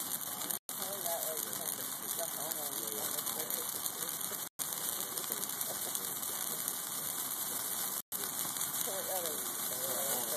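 Dry Christmas tree and wooden pallets burning in a large bonfire: a steady rushing noise of the flames, with faint voices talking underneath. The sound cuts out completely for an instant three times.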